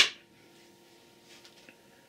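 A single sharp click as the spotlight is switched on, followed by near silence with only a faint steady hum.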